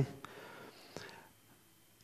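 A pause in a man's speech: faint breathing close to a handheld microphone, with a small click about a second in, then near silence.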